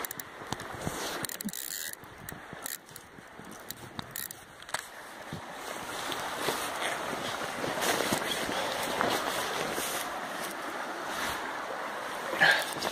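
River water running over a shallow stretch, a steady rushing that grows louder about halfway through, with frequent small knocks and rubs of handling on the phone's microphone.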